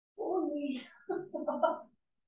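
A person's voice: a short, indistinct utterance in two parts, broken briefly about a second in.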